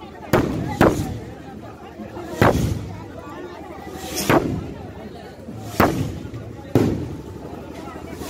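Aerial fireworks going off overhead: six sharp bangs at uneven intervals, some half a second apart and some nearly two seconds apart, each followed by a short ringing tail.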